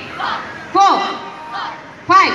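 Group of children shouting in unison with their taekwondo kicks, three short shouts, each rising and falling in pitch, the middle one the loudest.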